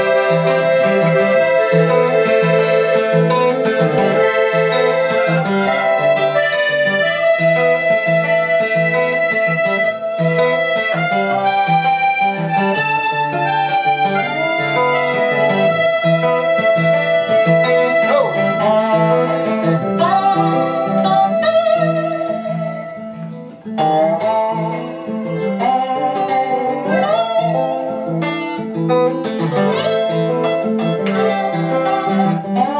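Live instrumental break of an acoustic roots song: accordion holding and shifting chords, a strummed acoustic guitar, and a lap-played slide guitar with sliding notes. The playing thins out briefly a little past the middle, then the full band comes back in.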